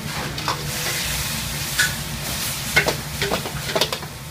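Pork ribs with peppers and onion sizzling in a black wok while a metal wok ladle stirs them, scraping and knocking against the pan several times over the steady hiss of frying.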